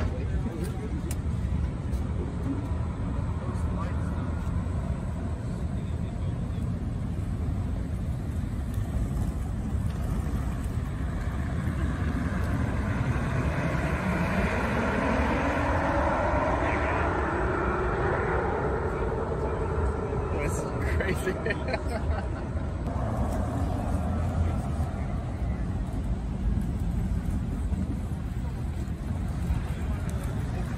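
Tesla Cybertruck prototype driving past, its electric drive giving a whine that rises in pitch as it speeds up and then falls away, over a steady low rumble of outdoor noise. Bystanders' voices and a laugh are heard, with a few sharp clicks near the end of the pass.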